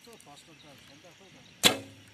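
A recurve bow is shot about one and a half seconds in: one sharp snap of the released string, followed by a brief ringing that dies away quickly.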